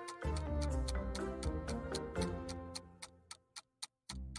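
Countdown timer sound effect ticking evenly over background music; the music fades out about three seconds in, leaving the ticks alone.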